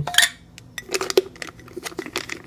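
A glass mason jar being handled: a scattering of light clicks and taps of fingers and packets against the glass.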